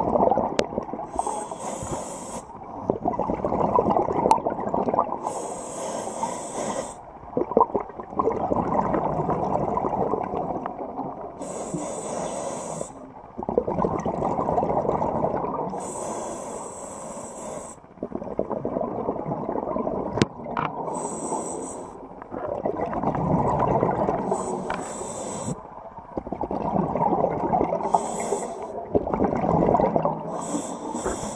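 A scuba diver breathing through a regulator underwater: a short hiss on each inhale, seven times at about four-second intervals, each followed by a long bubbling rush of exhaled air.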